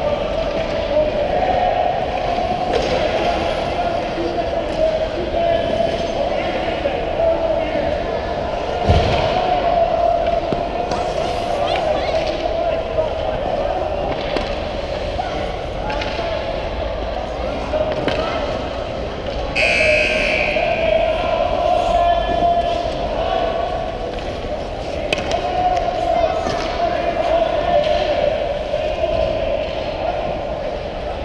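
Youth ice hockey play heard on the ice: skate blades scraping and cutting, with stick and puck knocks and a heavier thud about nine seconds in, over a steady hum in the rink and distant voices. A brighter scrape stands out about twenty seconds in.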